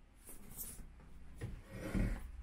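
Rubbing and handling noise from a phone being moved and carried, with a few soft low thumps in the second half.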